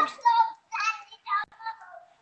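A man's voice over a poor online connection, breaking up into garbled, thin-sounding fragments with short dropouts: the audio of the remote contribution failing.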